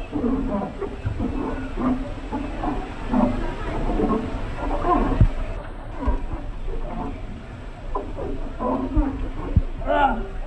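Voices calling out and whooping, echoing inside an enclosed plastic tube water slide, in many short wordless bursts, with a few brief low thumps of bodies knocking against the tube.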